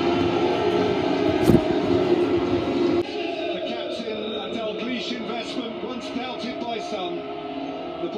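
Music and indistinct voices heard through a television's speaker, with a single knock about a second and a half in; the sound drops sharply in level about three seconds in.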